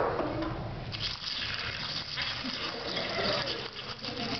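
Crunching, chewing sound effect of a termite eating a peanut: a noisy rasping that starts about a second in and keeps going, after a short sharp sound at the very start.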